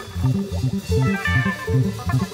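A live band playing: electric bass and electric guitar in a choppy riff of short repeated notes, about four a second. A held low drone cuts off just as the riff begins.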